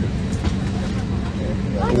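Steady low drone of an Airbus A321 airliner cabin, with a constant low hum running through it. A man's voice starts right at the end.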